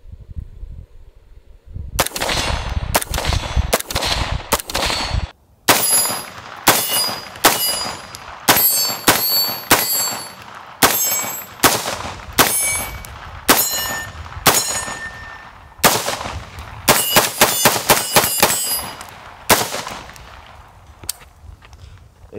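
CMMG Banshee pistol in 4.6x30mm firing a string of about two dozen shots, one or two a second, speeding up into a quick burst of shots near the end. Many shots are followed by the ringing clang of steel targets being hit.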